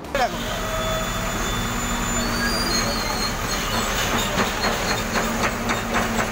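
Wheel loader's diesel engine running steadily, with brief high metallic squeals a couple of seconds in and rattling, knocking clatter of debris in the second half.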